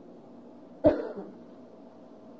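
A person coughing once, a short sharp cough about a second in, over a faint steady hum.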